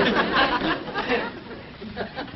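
Studio audience laughter from a sitcom laugh track, loud for about the first second and then dying away.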